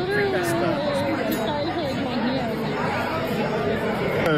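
A high, gliding speaking voice over the background chatter of a crowded restaurant dining room.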